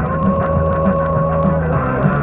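Rock music playing from an 8-track tape on a Panasonic RS-853 8-track player, with its belt freshly cleaned: one long held note over a steady bass line, the note ending shortly before the close.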